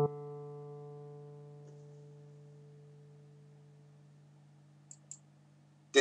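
A single D note on an acoustic guitar's open D string rings on and slowly dies away. Two faint ticks come shortly before the end.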